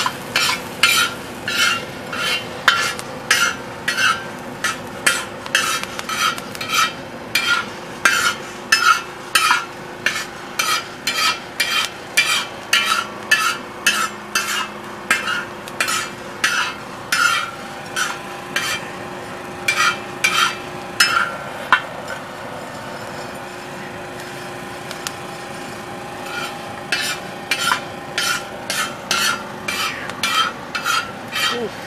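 A slotted spoon scraping rhythmically across a steel disco cooker, stirring raw green coffee beans that are being roasted. There are about two strokes a second, with a pause of a few seconds about three-quarters of the way through before the stirring resumes.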